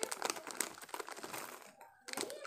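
Plastic snack packet crinkling and crackling as it is handled, a run of irregular crackles that thin out near the end.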